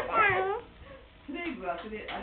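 A high, meow-like cry that falls in pitch, followed about a second later by a second, lower wavering call.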